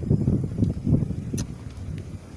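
Wind buffeting the microphone in uneven low rumbling gusts, with one sharp click about one and a half seconds in.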